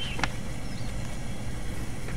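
Steady low rumble of outdoor night ambience under a few faint high chirps, with a brief click at the start.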